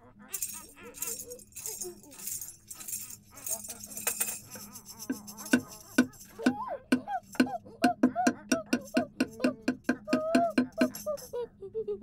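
Hand-made foley effects: a shaken rattle for the first few seconds, then a fast run of sharp clicks and clacks mixed with short hooting voice sounds.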